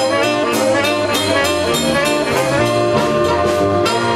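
Saxophone band playing a jump boogie live: many saxophones together in brassy held and moving notes over a drum kit keeping a steady beat.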